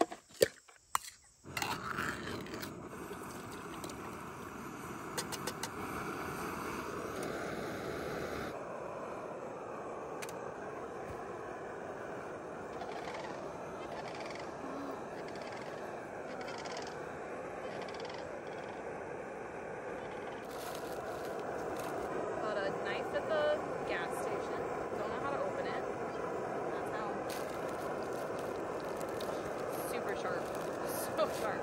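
Liquid-fuel camp stove burning with a steady rushing hiss under a pot of soup, after a few clinks of a tin can at the start.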